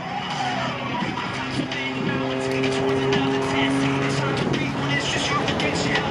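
MX Aircraft MXS-RH aerobatic plane's piston engine and propeller running at power overhead, a steady pitched tone that swells through the middle and fades near the end.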